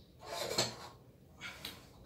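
A candy jar and a kitchen scale being set down and shifted on a shelf: a clattering scrape about half a second in, then two light knocks.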